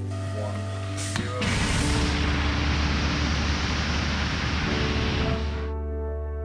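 Liquid rocket engine test hot fire: a loud, even roar with deep rumble, starting about a second and a half in and cutting off sharply after about four seconds, over background music.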